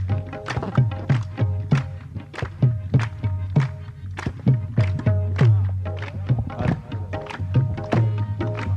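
Qawwali accompaniment without singing: a harmonium holds steady chords while hand-drum strokes keep a fast rhythm, some deep strokes sliding down in pitch, mixed with rhythmic hand claps.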